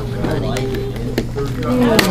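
Indistinct conversation of several people in a room, with a couple of sharp clicks and a steady low hum underneath.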